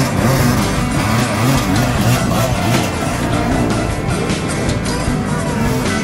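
Off-road dirt bike engines revving up and down as the bikes ride through a shallow river, with music playing along with them.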